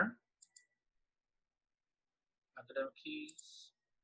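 A soft computer mouse click about half a second in, then quiet, with a brief murmur of a man's voice near the end.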